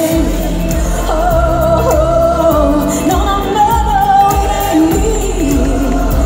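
Live electronic pop music through a concert PA: a woman sings a melody over a synth track with a steady beat, and a deep bass line comes in right at the start.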